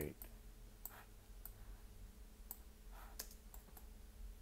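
Faint, scattered clicks from a computer mouse and keyboard, about seven in four seconds, over a faint steady hum.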